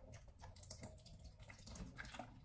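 Faint, scattered light clicks and taps from a plastic bleach bottle and mop bucket being handled.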